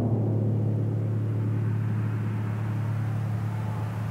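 A steady low drone: one deep sustained note, slowly fading.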